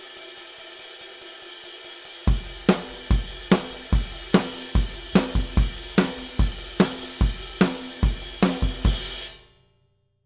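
Drum kit playing a driving rock groove over a backing track: steady eighth notes on the ride cymbal, about five strokes a second. About two seconds in, kick and snare join, alternating on every beat. It all stops suddenly near the end.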